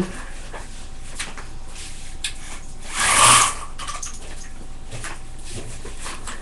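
Mini blinds being closed: a brief rustling rattle of the slats about three seconds in, with a few faint knocks around it.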